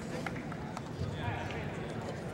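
Murmur of distant voices in a large arena, with a few sharp taps and knocks in the first second from a wushu staff routine's footwork and staff.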